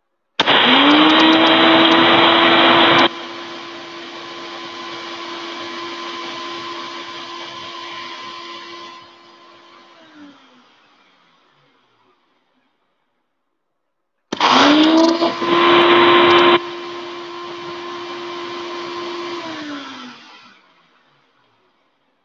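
Electric blender running twice: each time the motor spins up with a rising whine, runs at a steady pitch, then winds down with a falling pitch. Each run is loudest for its first few seconds, and the second run is shorter.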